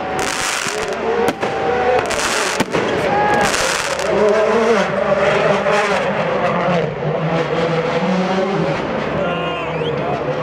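Rally car engine revving hard at speed, mixed with sharp bangs and crackling bursts from firecrackers and flares among the spectators, and crowd voices shouting.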